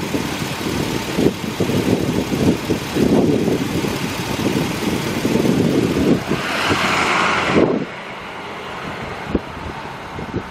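2005 GMC Sierra 1500's 5.3-litre V8 engine running, a rough low rumble. A higher hiss joins for a second or so, then the sound drops to a quieter level near the end.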